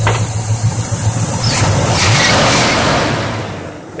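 Pontiac GTO's carbureted V8 running at a steady idle, then revved up about a second and a half in and easing back down near the end.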